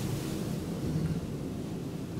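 Steady low rumble and hum of an ASEA Graham traction elevator, modernised by KONE in 2008, heard from inside the car as it travels down between floors.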